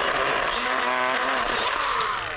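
Small handheld Stihl pruning chainsaw running steadily as it cuts into the soft, hollow centre of a tree trunk that borers have rotted to sawdust.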